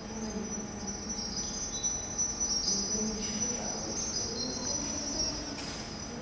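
Electronic sound from an interactive audiovisual installation: high, steady whistling tones over short, low tones that come and go.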